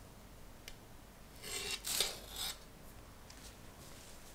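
A metal cake server scraping on a ceramic plate as a slice of cake is set down: a short scrape, a sharp tap about two seconds in, then a second brief scrape as the server slides out from under the slice.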